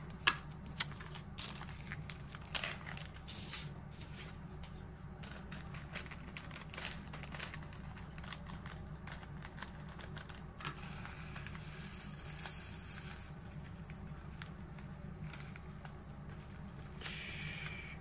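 Light clicks and rattles of resin diamond-painting drills handled in a plastic funnel tray and small bottle, with brief crinkling of a plastic zip bag, over a steady low hum. The clicks are thickest in the first few seconds.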